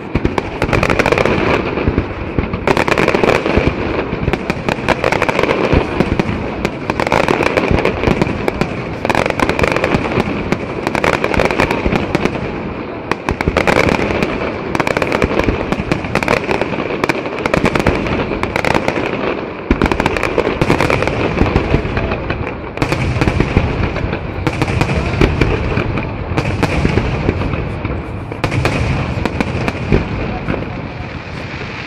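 Aerial fireworks display: shells bursting one after another in a continuous barrage, with dense crackling between the louder reports.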